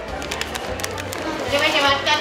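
Crunching of a deep-fried quesadilla being bitten into, a run of short crisp clicks, over steady background music and market chatter. A voice rises near the end.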